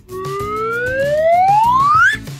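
A cartoon sound effect: one smooth pitched glide rising steadily over about two seconds as the two bulldozers are mixed into one, over light background music.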